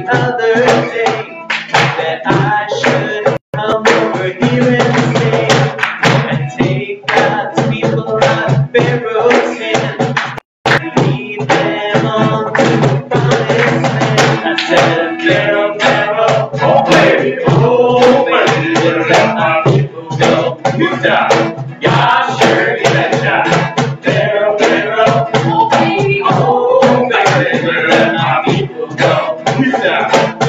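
Voices singing an upbeat sing-along to a strummed acoustic guitar, with a cajon box drum keeping the beat; the sound drops out for an instant twice.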